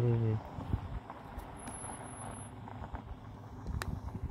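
A man's laugh trails off in the first half second, then a van's engine runs with a low steady rumble on the gravel road ahead. Small knocks come from a flopping camera gimbal, one sharper knock near the end.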